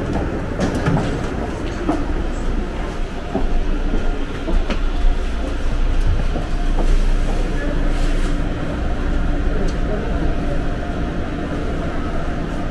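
Electric commuter train standing at a station platform: a steady low rumble with scattered clicks and knocks, and faint voices. A steady hum comes in about halfway through.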